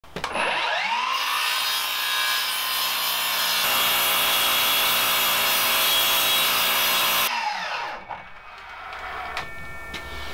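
Milwaukee 254 mm battery-powered mitre saw spinning up with a rising whine, cutting through a piece of wood for about six seconds, then winding down after the trigger is released near the seven-second mark. The blade is worn and dirty, not the best quality anymore, and needs changing.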